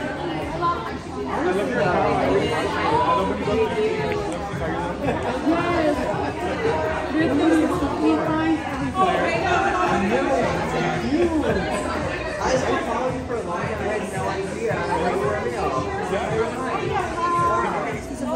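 Several people talking at once, their voices overlapping into a steady chatter with no single voice clear.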